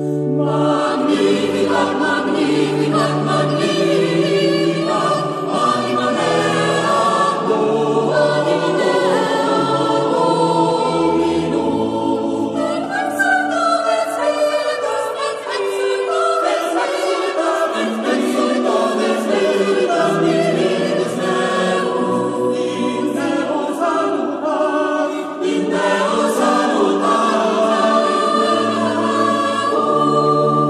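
Mixed choir singing sustained sacred music with organ accompaniment and held bass notes.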